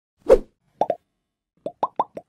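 Cartoon-style pop sound effects for an animated logo: one soft thump-whoosh, then short rising 'bloop' pops, two in quick succession and then three more.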